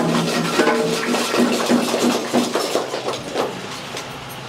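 Mixed voices of a gathered congregation with scattered knocks or claps. It dies down to a low murmur near the end.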